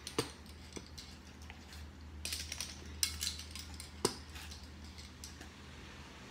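White plastic measuring spoons on a ring clicking and clattering against each other and the canister as a spoonful is scooped and levelled. A few sharp clicks and short scrapes are heard over a low steady hum.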